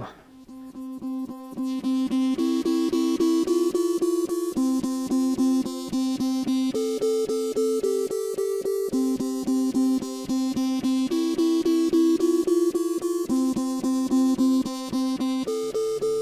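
Background music: a plucked guitar playing a quick, even run of repeated notes that shift pitch every couple of seconds.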